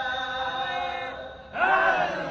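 A man's voice holding one long chanted note of majlis recitation, which fades about a second and a half in. Louder voices then break in with sliding, cry-like pitch.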